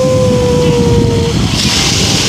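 A motorboat engine drones steadily, sliding slowly lower in pitch, and stops about a second in, over a constant low rumble of wind and surf. Near the end a small wave washes up the sand with a hiss.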